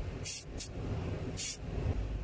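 Short hisses of spray paint in quick bursts, three of them, over a steady low rumble.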